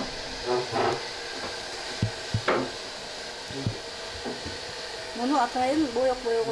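Water boiling in a steel pot on an electric hotplate, a steady hiss, with a few light knocks as a cloth bundle of leaves is put in and pushed down with a wooden stick.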